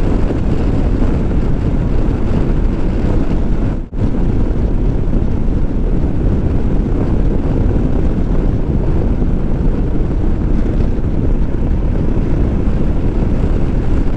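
Royal Enfield Himalayan 411cc motorcycle ridden at speed: a loud, steady rush of wind on the microphone over road and engine noise, with a brief break about four seconds in.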